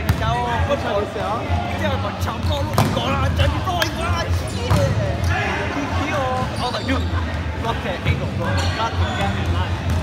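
Indoor volleyball rally: several sharp smacks of the ball being hit, with players' voices calling out between the hits.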